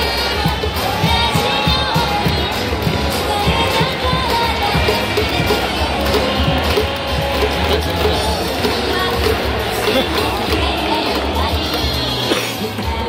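Music playing through a baseball stadium's loudspeakers over a large crowd's cheering.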